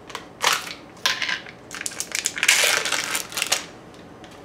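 A plastic seal being peeled and crinkled off a tub of vegan cream cheese, in several short crackly bursts. The longest and loudest comes about two and a half to three and a half seconds in.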